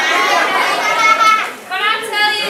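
High-pitched human voices making long, drawn-out sliding vowel sounds, with one held sound rising slowly in the middle.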